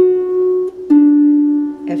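Harp playing two single plucked notes, F sharp and then the D a third below, about a second apart, each left ringing.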